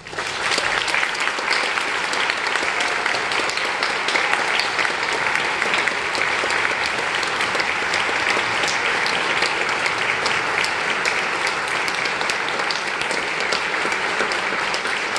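Audience applause, breaking out all at once and going on steadily: many people clapping.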